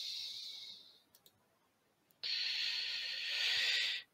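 Breath noise on a close microphone: a short breath fading out over the first second, two faint clicks just after a second in, then a longer, steady breath from just past two seconds that cuts off suddenly.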